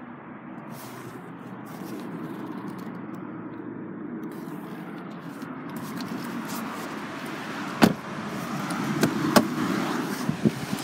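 Steady rushing background noise that grows slightly louder, with two sharp knocks near the end, about a second and a half apart.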